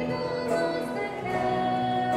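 A church worship song: women's voices singing at microphones, with other voices blending in, over acoustic guitar and electric bass.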